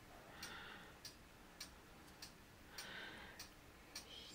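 Near silence: room tone with faint, evenly spaced ticks, a little under two a second.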